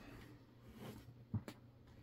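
Quiet handling noise of a large LEGO model being turned by hand on a tabletop: a soft knock and a sharp click in quick succession about halfway through, over low room tone.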